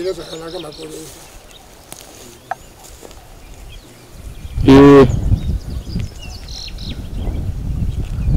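Birds chirping faintly over a quiet rural background, with a man's voice briefly at the start. About halfway through comes one loud, short vocal utterance from a man.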